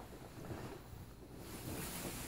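Faint rustle and swish of a full satin skirt over a tulle petticoat as the wearer turns around, growing a little louder near the end.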